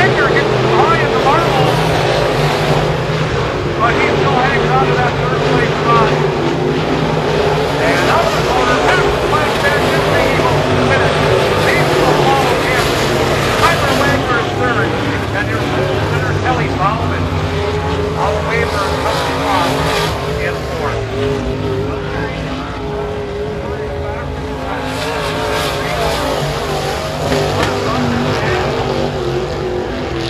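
Several IMCA Modified dirt-track race cars' V8 engines running continuously as the cars circle the track.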